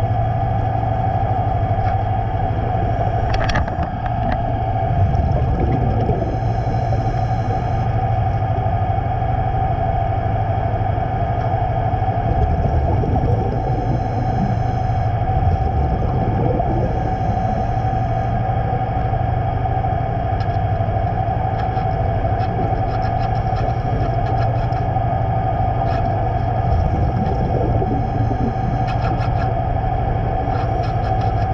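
Steady mechanical hum with a droning tone, heard underwater beside a big container ship's hull and propeller, with faint scattered ticks in the second half as a scraper works the barnacle growth.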